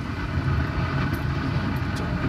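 A car's low, steady engine and road rumble, heard from inside the car.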